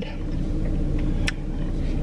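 Steady low rumble of a car idling, heard from inside the cabin, with a single brief click just over a second in.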